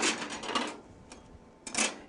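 Plastic embroidery hoops clattering and clicking against each other as one is picked out of a pile on a table, then a single click about a second in.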